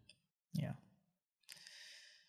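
A quiet spoken 'yeah', then a faint breath with no voice in it about a second later.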